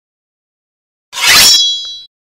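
Logo sting sound effect: after about a second of silence, a sudden loud noisy hit with a bright metallic ring that fades out within about half a second.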